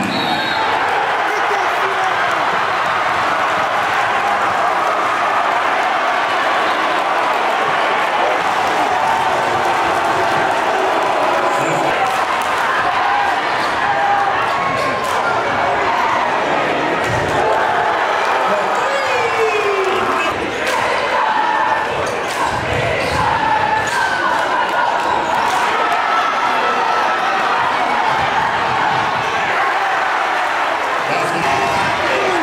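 Live basketball game sound: a crowd's voices and shouting fill the gym while a basketball bounces on the hardwood court, with many short knocks from the ball and play.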